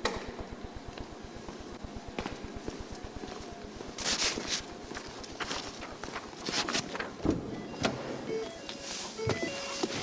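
Car engine idling in a low, even pulse, with scattered knocks and rustles over it from about four seconds in and a few short beeps near the end.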